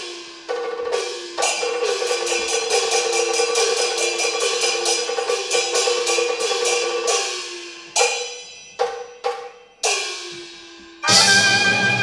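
Cantonese opera percussion section playing a gong-and-cymbal pattern with wood-block strokes: strikes about three a second, each sliding down in pitch, thinning to a few spaced strikes after about seven seconds. About eleven seconds in, the string-led instrumental ensemble comes in.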